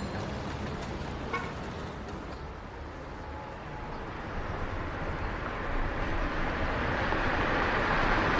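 A car driving up, its engine and tyre noise growing steadily louder over the second half, over a steady street hum.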